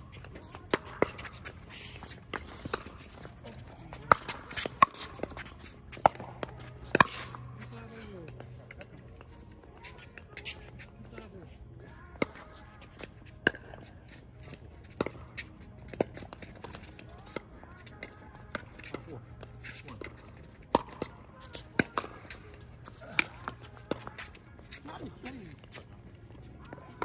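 Pickleball paddles striking a plastic ball: sharp clicks at irregular intervals, several in quick succession early on, then fewer and softer, with faint voices in the background.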